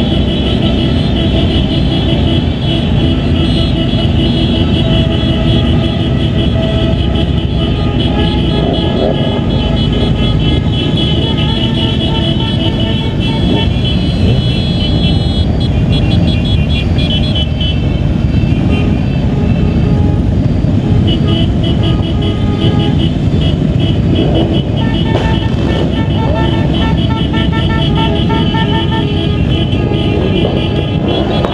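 A group of motorcycles riding together, heard as engine rumble and wind rush on a moving bike, with horns honking over it again and again, in pulsing runs.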